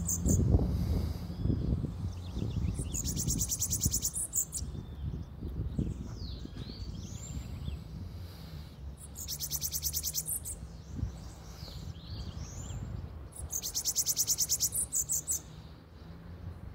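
Caged bananaquit (sibite) singing: three high, rapid buzzing trills of just over a second each, about five seconds apart, with short sliding chirps between them. Low rustling in the first few seconds.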